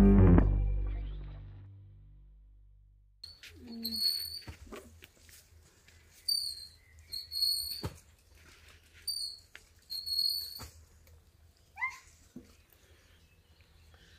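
Acoustic guitar music fading out, then a bird chirping outdoors: short high chirps in small groups, with gaps between them.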